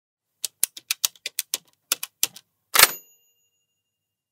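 Typewriter sound effect: about a dozen quick key strikes, then a louder carriage-return swipe with a bell ding that rings out and fades over about a second.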